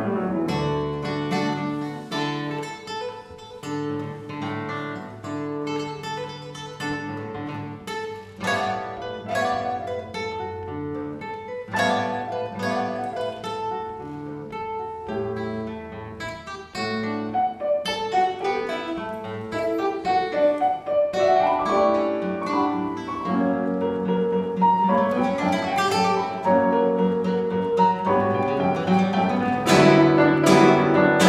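Classical guitar and grand piano playing a duo piece: plucked guitar notes in the lead with piano accompaniment underneath, growing louder and busier in the second half.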